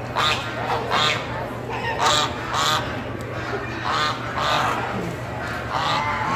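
Domestic geese squawking, with about seven loud, harsh honks in quick, irregular succession. A steady low hum runs underneath.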